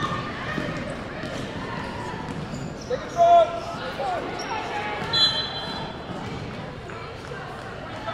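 Basketball bouncing on a gym floor during play, with voices echoing in the large hall and a few short sharp calls or squeaks.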